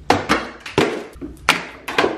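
A series of sharp knocks, about five in two seconds at uneven spacing, each dying away quickly.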